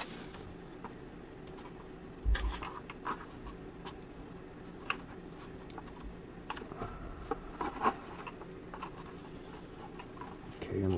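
Hands handling and pressing a thin basswood skin sheet onto a wooden model-boat sponson: light rubbing of wood with scattered small taps and clicks, the loudest a dull thump about two seconds in.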